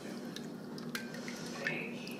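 Jello powder being stirred into hot water with a spoon in a bowl: faint liquid swishing with a few light clicks of the spoon against the bowl.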